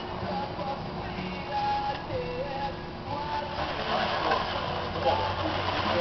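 A weight sled loaded with plates scraping along asphalt as it is dragged, a steady rough grinding with a low rumble that grows louder in the second half. Distant voices call out over it.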